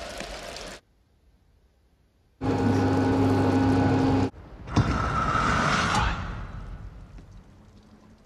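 Movie soundtrack: rain cuts off abruptly under a second in, then after a short pause a heavy motorized door runs loudly in two stretches, the second with a higher whine, fading away near the end: the colony's door opening once its lock is bypassed.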